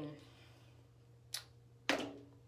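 A woman's speech trails off into a quiet pause with a steady low hum. A brief sharp noise comes about a second and a half in, and another just before her voice starts again near the end.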